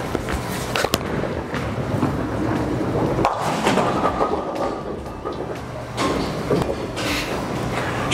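A bowling ball released onto a wooden-look synthetic lane and rolling down it, with a click about a second in, then the pins clattering about three seconds in; bowling-alley background noise runs underneath.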